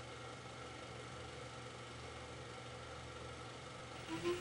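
Faint steady background hiss with a low hum, and no distinct events.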